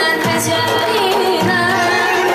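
Live Azerbaijani folk music: a girl singing with a wavering, ornamented melody, accompanied by a long-necked lute, an accordion and a kamancha, with a low pulse about once a second.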